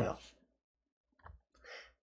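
The end of a man's spoken sentence, then a short pause with a faint mouth click and a soft breath before he speaks again.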